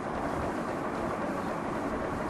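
Steady background noise with no speech: the constant hiss and low rumble of the lecture recording.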